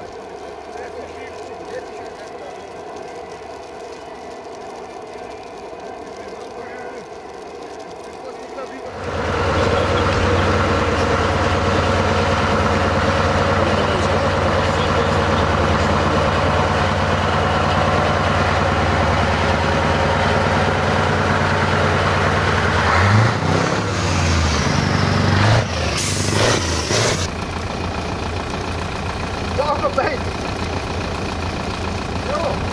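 Scania 450 V8 diesel truck engine running close by: loud and steady from about nine seconds in, with the engine speed rising and falling a couple of times later on. A short hiss of compressed air, like an air-brake release, comes near the end.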